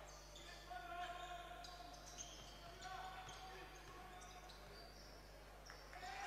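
Faint court sound of a basketball game in a sports hall: the ball being dribbled, with faint voices and short squeaks.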